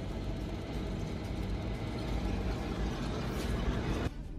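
Israeli Merkava main battle tank driving over rough ground: its diesel engine running steadily under the rumble and clatter of the tracks and running gear.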